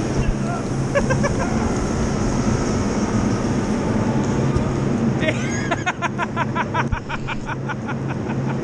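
Steady low machinery hum at a chairlift unloading station, with voices over it and a quick run of short pulsed voice sounds in the last few seconds.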